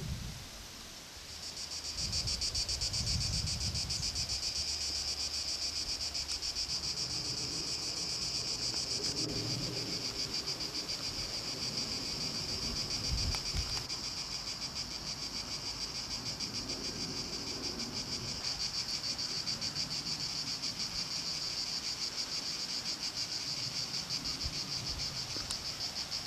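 A chorus of cicadas shrilling steadily, a high continuous buzz that rises in about two seconds in and holds.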